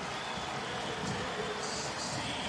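Steady crowd noise from a football stadium, an even hubbub without any single standout sound.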